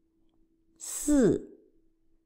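A woman's voice saying the Mandarin syllable 'sì' (四, four) once, about a second in: a hissed 's' and then a steeply falling fourth-tone vowel. A faint steady hum runs underneath.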